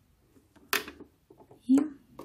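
A short rustle of fabric and ribbon being pulled by hand, about three-quarters of a second in, followed by a soft spoken word near the end; the sewing machine is not running.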